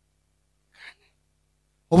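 A pause in a man's speech, broken by one short, faint breath into a handheld microphone about a second in; his speech starts again at the very end.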